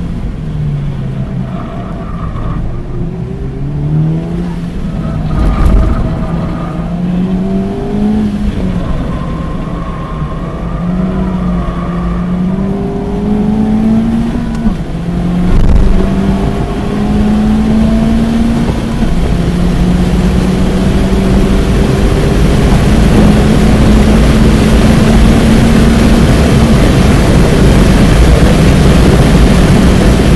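2023 Honda Civic Type R's stock turbocharged 2.0-litre four-cylinder heard from inside the cabin under hard acceleration. The engine note climbs in steps, each rise cut by a drop at a gear change, with a dip about halfway and longer pulls after it. Wind and tyre noise build near the end as the car reaches about 117 mph.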